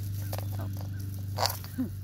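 Hands pulling sweet potato vines and roots out of potting soil in a container: crackling rustles of stems, leaves and crumbling soil, with a louder rustle about one and a half seconds in, over a steady low hum.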